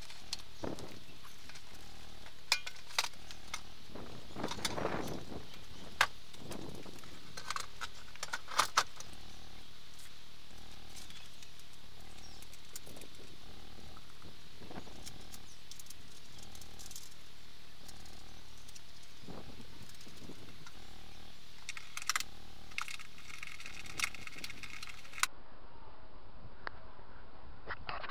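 Scattered metal clinks and knocks of hand tools on the bolts as the mushroom nuts holding the passenger seat base are tightened down, with a quick cluster of clicks near the end, over a steady faint hiss.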